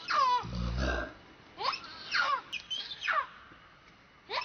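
Baby macaque crying: about four high squeals, each sliding sharply down in pitch, with a low thump about half a second in.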